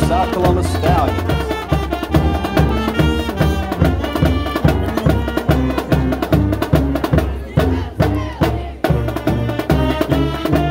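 A school marching band playing its fight song: brass chords and a sousaphone bass line over a steady, evenly repeating drum beat.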